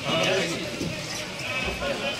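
Voices of players and people at the bench calling out across an outdoor football pitch, with a low thump near the end.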